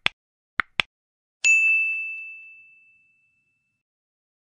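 Computer mouse-click sound effects: a click at the start, then a quick double click. About a second and a half in comes a single bright bell ding, the loudest sound, ringing out and fading over about two seconds. It is the notification-bell chime of an animated subscribe button.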